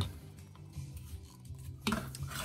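Faint rubbing of a vinyl Funko Pop figure being worked down onto its plastic display stand by hand, then a single knock near the end as it is set down on a wooden tabletop.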